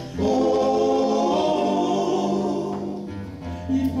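Male folk vocal group holding a long sung chord in harmony over acoustic guitars; the chord fades around three seconds in and the guitars come back in just before the next sung line.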